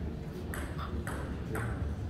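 Celluloid-type table tennis ball bounced three times, about half a second apart, each a short ringing ping, as a player readies to serve.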